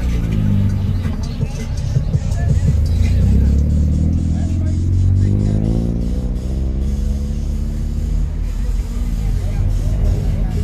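A motorcycle engine running and revving, rising in pitch near the middle, mixed with loud music and indistinct voices.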